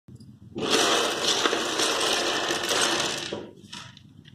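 Many small plastic building blocks clattering and rattling against one another and across a table as the pile is scattered: a dense rattle that starts about half a second in and dies away near the end.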